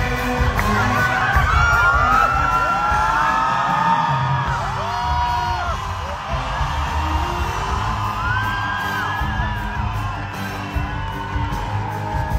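A live band plays with drums and bass while the audience cheers and whoops over it. High calls rise and fall above the music, most of them in the first half.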